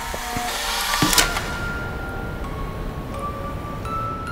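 Soft trailer score with held, bell-like tones. About a second in, a short rushing noise ends in a sharp click.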